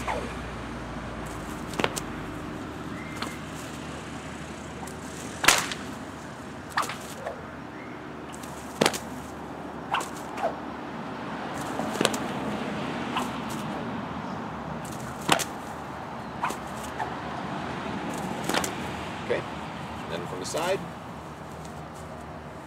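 Bullwhip cracking repeatedly in a fast figure eight, about a dozen sharp cracks irregularly spaced one to three seconds apart. The figure eight alternates a cattleman's crack in front with an underhand crack behind.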